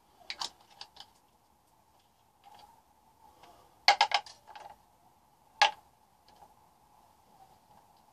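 Small plastic paint pots and their caps clicking and clacking as they are handled and set down on a table. A few light clicks come near the start, a quick cluster of sharp clacks about four seconds in, and one more sharp click shortly after, over a faint steady hum.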